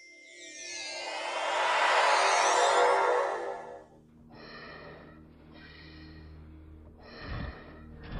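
Science-fiction sound design: a shimmering whoosh with rising and falling pitch glides swells up and fades out about four seconds in. A low steady hum follows, with a tonal pulse repeating about once a second.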